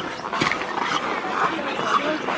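Footsteps crunching in packed snow at a walking pace, about two steps a second, with a short sharp click about half a second in.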